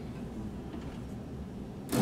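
A lull in acoustic guitar playing that leaves only low, steady room noise. Just before the end, a loud strum on the acoustic guitar sets in.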